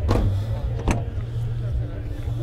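A car's rear door being opened: two sharp clicks, about a second apart, from the handle and latch, over a steady low rumble.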